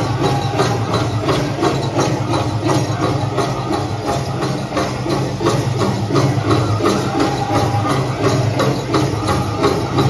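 Powwow drum group playing through loudspeakers: a big drum struck in a steady beat under group singing, with no break.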